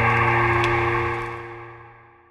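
Chill piano music: a sustained chord rings on and fades away to silence near the end, with a soft hiss fading out along with it.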